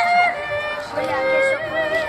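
A soprano voice singing long held notes with a wide vibrato, moving to a lower note about a second in and then back up.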